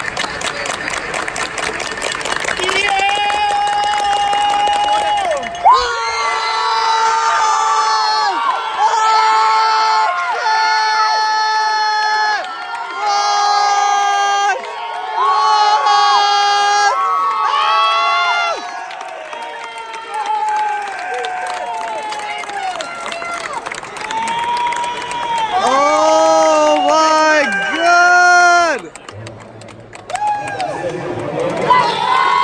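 High-pitched voices giving a run of long held shouts, each lasting about a second and bending in pitch at the end, with a softer stretch about two-thirds of the way through.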